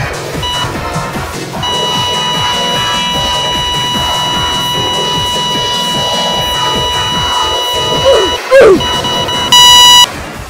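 A heart-monitor beep, then a long steady flatline tone laid over an electronic pop song with a steady beat: the sound of a heart monitor going flat. Near the end the tone breaks off for a couple of swooping glides, then comes back as a short, very loud blast.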